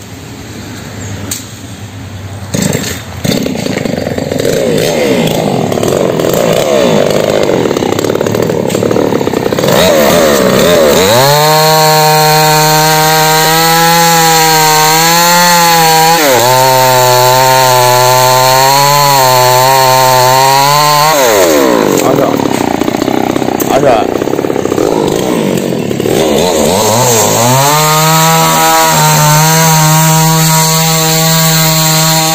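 Two-stroke chainsaw revving up over the first few seconds, then cutting through a fallen tree trunk. Its engine note drops and holds steady under load for about ten seconds. It revs freely again, then settles back into a second cut near the end.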